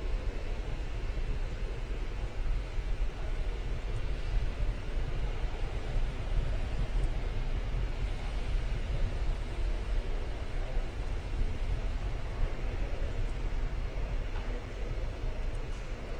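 Distant roar of a Falcon 9 rocket's nine first-stage engines during ascent, heard from the ground as a steady, low rumbling noise with no distinct events.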